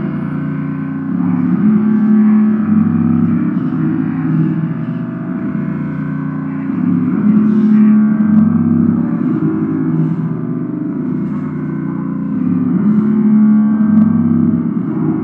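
Background music: low, sustained gong-like tones that swell and fade in slow waves every few seconds.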